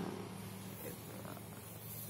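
Faint steady low hum with a rough texture and no other distinct event: background room noise.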